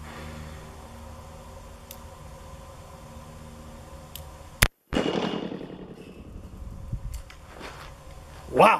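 A single shot from a Smith & Wesson Model 29 .44 Magnum revolver about four and a half seconds in, sharp and loud. The sound cuts out for a moment right after it, then a decaying echo trails off.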